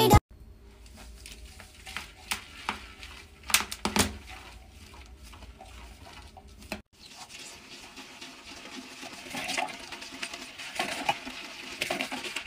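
A few sharp clicks and knocks in the first half, then a toilet brush scrubbing a toilet bowl in water, a wet swishing that grows louder toward the end.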